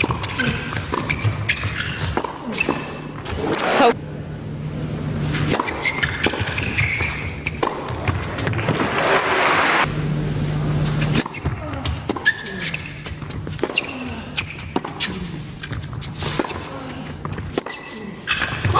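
Tennis ball struck back and forth by rackets in rallies, a run of sharp hits, with a swell of crowd noise around the middle.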